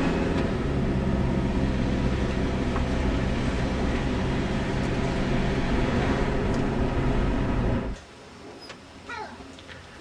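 Car engine and road noise heard from inside the cabin of a moving car, a steady low hum. It cuts off suddenly about eight seconds in, leaving quiet with a few faint, high wavering sounds.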